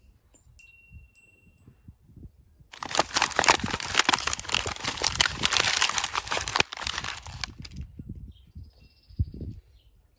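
Paper crinkling and rubbing under a person's hands for about five seconds, preceded by faint high ringing tones near the start.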